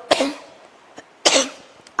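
A woman coughing twice into her hand, two short coughs a little over a second apart.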